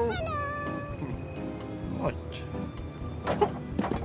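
A cartoon character's high, whiny wordless vocal sound that slides down in pitch during the first second, over background cartoon music, followed by a few short taps.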